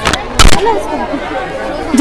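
Background chatter of several voices, with a loud short thump about half a second in and a smaller one at the start.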